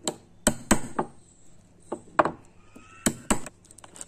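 A wood chisel driven into a wooden wheel by sharp blows on its handle: about five strikes, two quick pairs with a single blow between.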